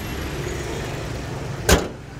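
Toyota Vios engine idling smoothly under the open bonnet, then the bonnet is slammed shut with one sharp bang near the end, after which the engine sounds quieter.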